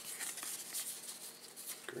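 Baseball cards being flipped through by hand, the cards sliding and rubbing against one another in a soft, steady papery rustle with small clicks.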